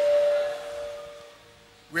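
A held musical tone, one high steady pitch with a lower one beneath it, fading away over about a second and a half, leaving only faint room sound.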